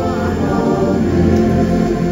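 A choir singing a hymn in chorus over sustained organ-like keyboard chords, the notes held and changing slowly.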